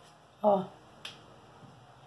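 A single short, sharp click about a second in, just after a brief spoken word.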